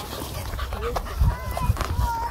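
Dog panting close to the microphone, over an uneven low rumble on the microphone, with a few short high whines in the second half.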